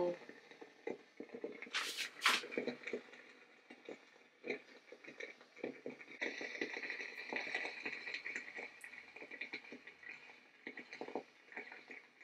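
Quiet handling sounds as a clay face mask is brushed onto the skin with an applicator brush: small scattered clicks and soft strokes. Two short, sharp hissy sounds come about two seconds in, and a faint hiss runs from about six to ten seconds in.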